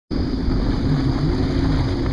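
Jet ski engine running under way, its pitch rising and falling a little, over a steady low rumble of wind and water.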